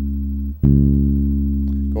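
Electric bass guitar plucked with the fingers, playing the same low note (fourth fret on the A string) twice: the first note rings and is cut off about half a second in, then it is plucked again and sustains.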